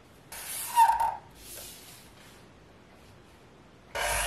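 A felt-tip marker drawn along a plastic ruler on a pattern board: one scratchy stroke with a brief squeak of the tip, then a shorter, fainter stroke.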